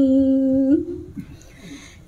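A woman's amplified voice holding one long, steady note of Khmer smot chanting, ending under a second in, then a short pause in the singing.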